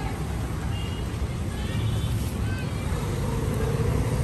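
Roadside traffic noise: a steady low rumble of passing vehicles, with faint voices in the background.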